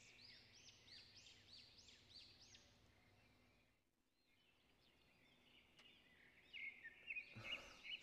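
Faint birdsong in the background: a bird repeating short rising-and-falling chirps, about two or three a second, fading out around the middle and coming back near the end.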